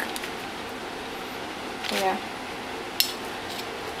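Metal spoons clicking lightly as cookie dough is scraped and dropped onto a parchment-lined baking sheet, with one sharp click about three seconds in, over quiet kitchen room tone.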